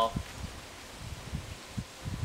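Wind buffeting the microphone in irregular low rumbles, with only a faint hiss above it.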